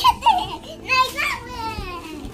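A young girl's high voice, talking and calling out in short bursts, ending in one long falling call.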